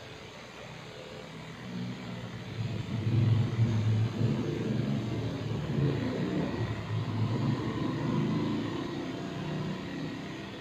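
Electric dog clippers with a No. 7 blade buzzing while shaving a Shih Tzu's coat, growing louder and uneven from about two seconds in.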